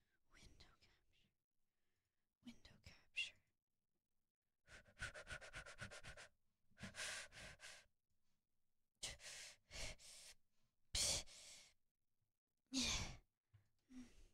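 A person's quiet breaths, sighs and under-the-breath mumbling in a few short bursts, with near silence between them.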